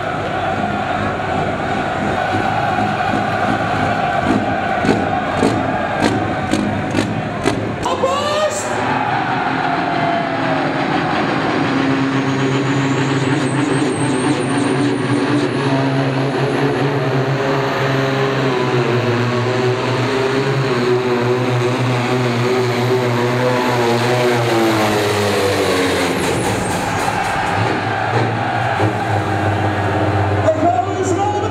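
Green John Deere pulling tractor's diesel engine running hard under load as it drags the weight-transfer sled down the track. Its pitch wavers and then falls away near the end as the pull is finished, leaving a lower, steadier engine note.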